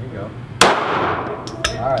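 A single handgun shot about half a second in, sudden and loud, its report echoing and dying away in the indoor range. A couple of short sharp clicks follow about a second later.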